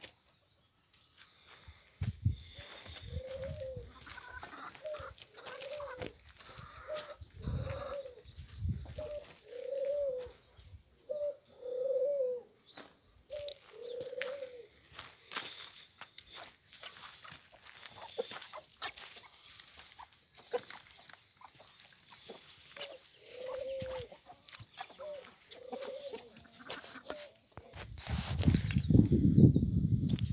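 A bird calling in short, low, arched notes about once a second, in a long run and then a shorter one near the end. A steady high whine and scattered small knocks run underneath.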